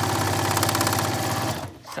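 Electric sewing machine stitching at a steady fast pace, its motor humming and needle striking in rapid strokes as it bastes the pleats of a fabric face mask; it stops about a second and a half in.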